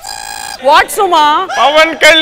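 A steady, buzzer-like electronic tone sounds once for about half a second, then gives way to speech.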